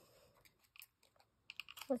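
Faint handling of small paper tags and cardstock pieces on a craft table: a few soft rustles, then a quick cluster of light clicks and ticks in the second half.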